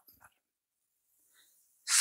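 A pause in a man's speech, near silence, closing on a short hiss as he starts speaking again near the end.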